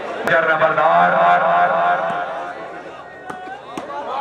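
A man's voice making a loud, drawn-out call for about two seconds, starting with a sharp click, then fading into quieter talk and crowd noise; a couple of sharp knocks near the end.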